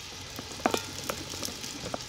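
Covered pot of soup sizzling and bubbling on the fire, a steady crackle with a few sharp clicks, the loudest about two-thirds of a second in.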